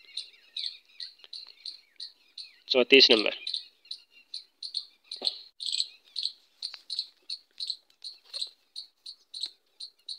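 A bird chirping over and over, short high chirps about three a second in an even rhythm. A brief burst of a person's voice about three seconds in is the loudest sound.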